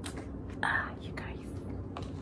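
Quiet whispered speech with a brief breathy hiss about half a second in, over a low steady hum. A few light clicks come from photo prints being handled.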